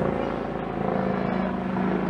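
Steady low drone of a motor running, one even pitched hum with no change in speed.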